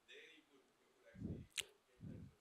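Mostly near silence: a faint, distant voice speaks briefly just after a second in, followed by a single sharp click.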